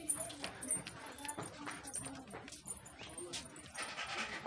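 Faint voices talking in the background, with scattered light clicks and knocks.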